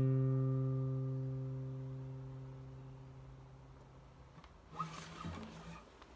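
Acoustic guitar's final chord ringing out and slowly fading over about four seconds as the song ends, followed by a brief rustle of handling near the end.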